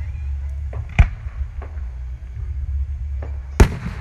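Two aerial firework shells bursting: a sharp bang about a second in and a louder one near the end, which trails off in a short echo.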